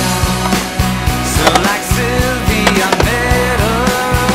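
Rock soundtrack music with a steady drum beat of about four hits a second under a bass line and a wavering sung or guitar melody.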